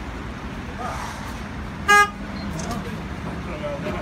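A single short horn toot about two seconds in, the loudest sound here, over steady street background noise.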